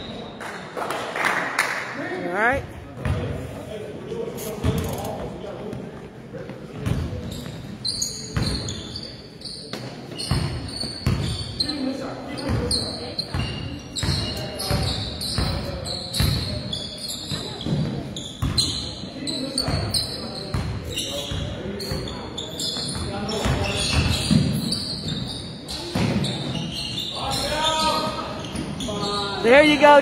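Basketball game in a gym: the ball bouncing repeatedly on the court amid spectators' chatter, with the echo of a large hall.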